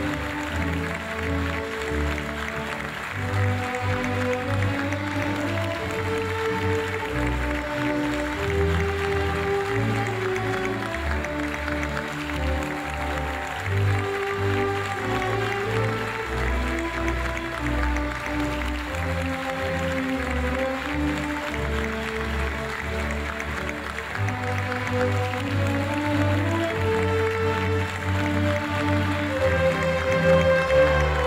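Instrumental music playing steadily, with long held notes over a low bass line.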